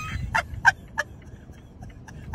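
A woman laughing in a car cabin: three short bursts of laughter about a third of a second apart, trailing off into fainter breaths of laughter, over the car's low running hum.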